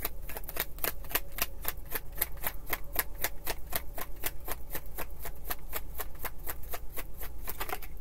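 A deck of tarot cards being shuffled by hand: a steady run of light card clicks, about five a second.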